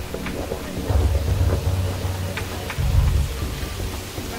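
Electronic music from a house and techno DJ mix: long, deep bass notes under a hissing, rain-like noise texture, with scattered percussive hits and no steady beat.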